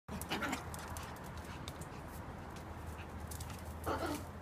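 A small dog's short call, once about half a second in and again near the end, over a low steady background hum.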